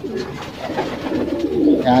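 Racing pigeons cooing, low and fairly quiet.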